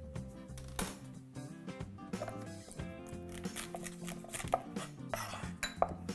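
Soft background music with a steady low line, with a few scattered light clicks and knocks of kitchen utensils.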